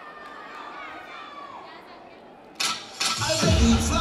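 Faint crowd chatter in a large hall, then about two and a half seconds in a short loud hit, and half a second later loud cheer routine music with a heavy bass beat kicks in.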